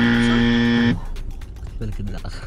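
Game-show wrong-answer buzzer: one flat, steady buzz lasting about a second that cuts off sharply, marking an incorrect answer. A voice is heard briefly near the end.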